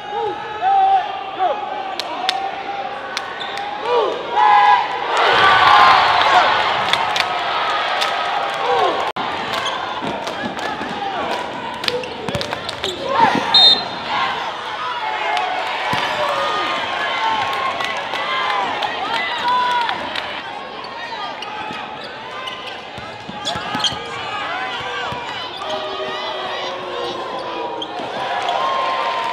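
Live basketball game sound in a gym: a basketball bouncing on the hardwood floor again and again, with crowd voices and shouting filling the hall.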